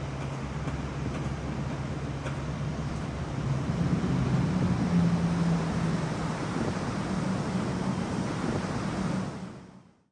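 A low, steady engine drone over light wind noise, rising in pitch and getting louder for a couple of seconds around the middle, then fading out near the end.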